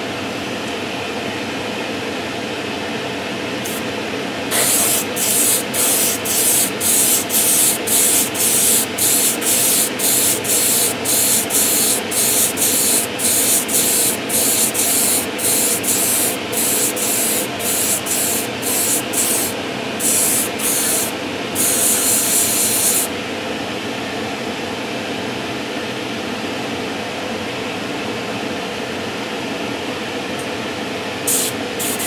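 Spray-booth extractor fan running steadily while an airbrush sprays a heavily thinned clear coat at high air pressure. From about four seconds in the airbrush hisses in a rapid series of short bursts, about one or two a second, then one longer burst before stopping a few seconds past twenty, leaving the extractor alone.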